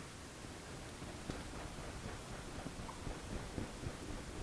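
Faint room hiss with soft, scattered ticks and rustles from a lathe's top slide being wound slowly by hand while a dial indicator reads along a taper.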